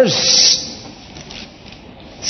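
A man's amplified voice ending the word "verse" on a falling pitch with a drawn-out hissed 's', then a pause of about a second and a half with only faint, even background noise.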